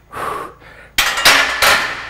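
A man breathing hard, with loud gasping breaths, while he strains through barbell good mornings. A single sharp knock comes about a second in.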